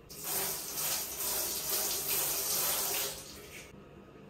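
Bathroom sink tap running for about three and a half seconds, then turned off.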